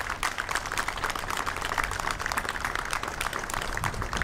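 Audience applauding: a dense, steady clatter of many hands clapping.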